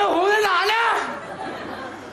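A man's loud, drawn-out shout: one call of about a second, its pitch rising and falling over a few syllables.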